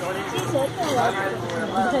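People's voices talking close by, with a few faint clicks.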